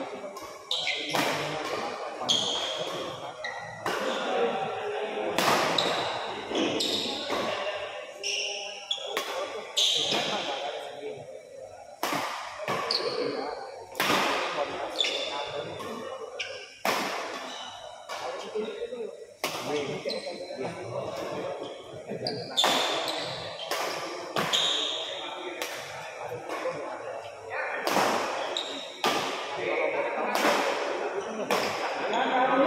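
Badminton rally: sharp racket strikes on the shuttlecock every second or so, with a few longer pauses, each ringing in a large echoing hall. People talk throughout underneath.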